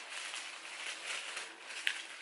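Soft rustling as a small makeup pouch is handled and opened, with a single sharp click near the end.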